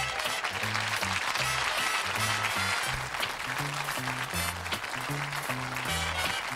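Sitcom closing theme tune playing, a bouncy bass line stepping from note to note under a full band.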